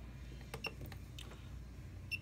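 A few faint, short clicks from the function generator's controls being worked by hand as its frequency is raised, over a low steady hum.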